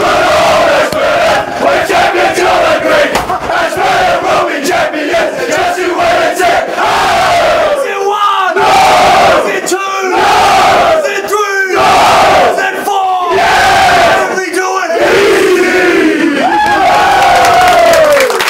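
A group of men chanting and singing together in unison, loud and continuous. After about halfway it falls into short repeated phrases about every second and a half.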